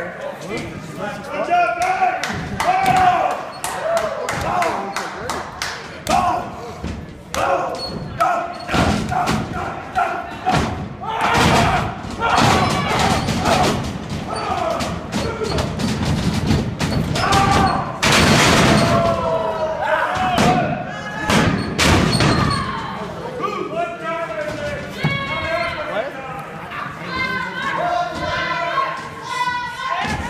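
Wrestlers' bodies repeatedly thudding and slamming onto a wrestling ring's canvas-covered mat, mixed with indistinct shouting from the ringside crowd.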